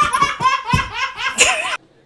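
A toddler laughing in a run of high-pitched, wavering peals that breaks off suddenly near the end.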